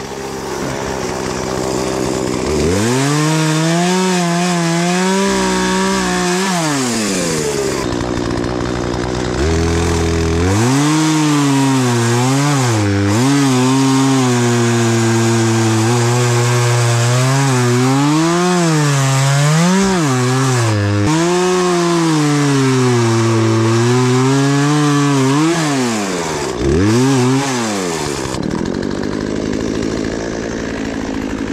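Two-stroke gas chainsaw revving from idle and cutting fallen tree limbs in two runs, a short one a few seconds in and a long one through the middle, its engine pitch dipping and recovering as the chain bites into the wood. It drops back to a low idle near the end.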